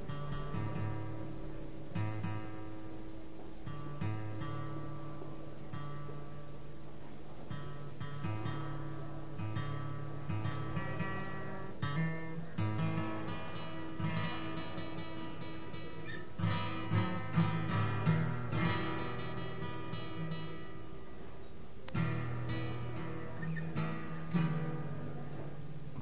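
Acoustic guitar picked and strummed, holding chords that change about every two seconds, with a few harder strums in the second half.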